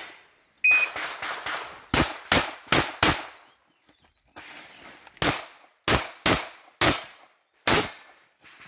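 A shot-timer beep, then a CZ pistol fired in rapid strings during a practical-shooting stage: four quick shots, a pause of about two seconds while the shooter moves, then five more.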